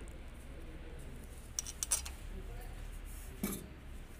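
A few short, light metallic clicks and taps as the parts of a truck's air compressor head are handled: three close together about halfway through and one more near the end, over a steady low hum.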